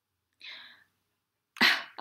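A faint breathy sound about half a second in, then near the end a short, loud, breathy burst of a person's quick laugh.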